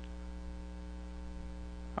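Steady electrical mains hum, a low drone with evenly spaced overtones, over a faint hiss.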